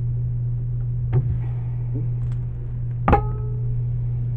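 A soap loaf being handled and pushed into place in a wooden soap cutter, over a steady low hum. There is a soft knock about a second in, then about three seconds in a sharp knock that rings briefly with a clear tone.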